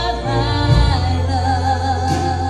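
Live church worship band playing a song with sung vocals: held, slightly wavering voice notes over guitars, keys and a steady bass line.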